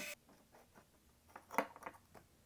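An electric screwdriver's small motor cuts off right at the start. After a quiet spell, a few light clicks about one and a half seconds in as the loosened Torx screw and the small SSD module with its metal bracket are lifted out by hand.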